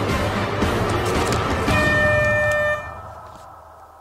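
Upbeat backing music for a timed challenge, cut across about two seconds in by a horn-like buzzer sound effect held for about a second. The buzzer marks time running out on the countdown, and the sound then fades away.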